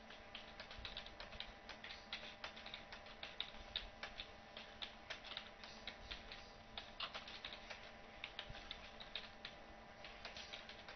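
Computer keyboard being typed on in quick, irregular runs of keystrokes, fairly faint, over a low steady hum.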